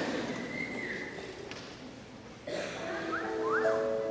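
Audience noise dies away, with a brief whistle about half a second in. About two and a half seconds in, a Yamaha Clavinova digital piano starts a soft introduction of long held notes and chords.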